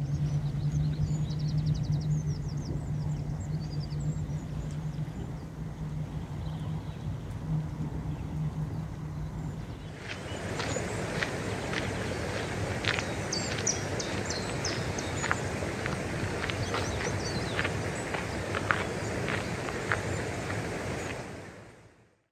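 Outdoor ambience of small birds chirping over a steady low hum; about halfway through it changes to a fuller bed with more frequent chirps and clicks, which fades out at the end.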